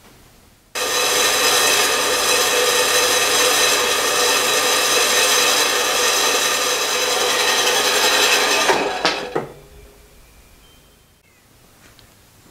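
Horizontal metal-cutting band saw running, its blade cutting through 1¼-inch square metal bar stock. It is a steady sawing noise with a hum of fine tones through it. It starts abruptly about a second in and stops at about nine seconds.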